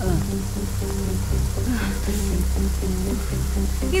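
Background film score: a sustained low bass drone with soft, held melodic notes, over a faint steady hiss of rain.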